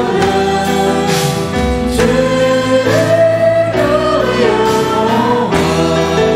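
A small worship group singing a hymn in French to instrumental accompaniment, with long held notes that move to a new pitch every second or so.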